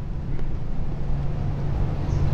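Steady low background rumble with a faint constant hum, the open microphone picking up ambient noise in a pause between spoken sentences.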